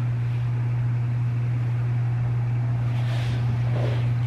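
A steady low hum with a faint hiss over it, unchanging throughout, with a brief soft rush near the end.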